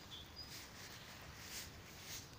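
Faint outdoor ambience with a few short, high bird chirps in the first half second.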